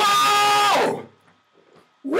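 A single held note lasting about a second, sliding up at its start, holding steady, then dropping away, followed by near silence.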